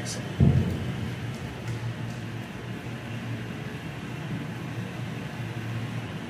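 Steady low rumble of a battery-powered ride rolling along a concrete tunnel floor, with one heavy thump about half a second in, as from a bump.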